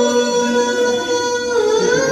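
A young woman's voice singing an Urdu nazm, holding one long melodic note that bends slowly in pitch.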